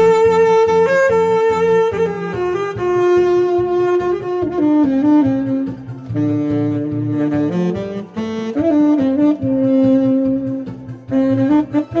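Selmer Reference 54 tenor saxophone with an Otto Link 7 mouthpiece and Vandoren Java 2.5 reed playing a melody of long held notes that step up and down, over a disco backing track with a steady beat.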